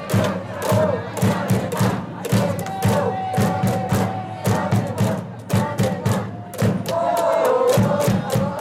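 A baseball cheering section chanting and shouting in unison over fast rhythmic clapping and low thumping beats. One long held call sits in the middle.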